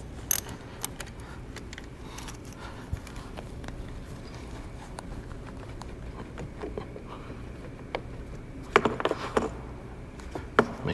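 Socket wrench and battery terminal clamp: scattered light metallic clicks and rattles as the negative cable is loosened and lifted off the battery post, with a short cluster of louder clicks near the end.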